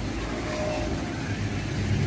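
Steady low hum of an engine running, with a short faint tone about half a second in.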